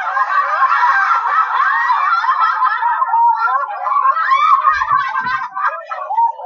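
Canned laughter: a crowd laughing together, a laugh-track sound effect that cuts in suddenly and runs on steadily.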